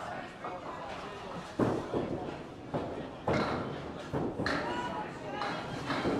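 Candlepin bowling: a small ball rolling down a wooden lane, with three sharp knocks of balls and pins about one and a half, three and a quarter and four and a half seconds in. Voices murmur behind it.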